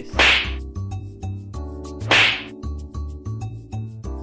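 Two loud slaps to the face, about two seconds apart, over background music with a steady low beat.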